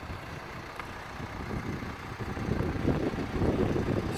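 Hyundai Santa Fe CM idling, a low steady rumble, with uneven low noise that grows louder in the second half.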